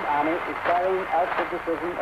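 A voice speaking in a language other than English on an old archival recording, over a steady background hiss.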